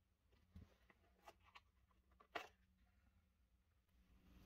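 Near silence, broken by a few faint plastic clicks as the fill tube cover is lifted off the freezer's back wall; the loudest click comes about two and a half seconds in.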